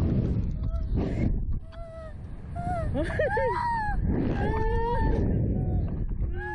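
Two riders on a slingshot ride screaming and laughing, with short wavering cries and then one long high scream, over a steady roar of rushing air on the microphone.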